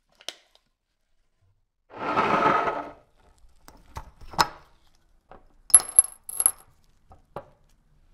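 A second-long scraping rustle, then rusty small screws and washers clinking into a small glass jar: a run of sharp clicks and several bright, ringing clinks in the second half.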